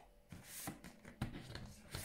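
White cardboard box being handled and opened: a string of short, faint rustles and scrapes of card against card, with a sharper click about a second in.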